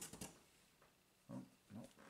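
Faint rustle of a comic book being slid into a cardboard comic box, then two short, low vocal murmurs from a person.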